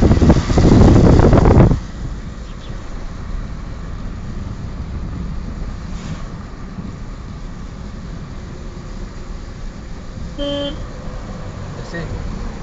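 Steady low road and engine rumble of a car being driven, after a loud noise in the first couple of seconds that cuts off suddenly. Near the end a vehicle horn gives one short toot.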